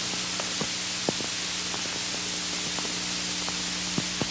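Steady hiss with a low steady hum and scattered faint ticks: the background noise of an old analog video recording over a blank screen, with no programme sound.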